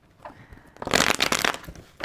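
A deck of oracle cards riffle-shuffled by hand, the two halves flicked together in a quick run of card clicks about a second in that lasts under a second.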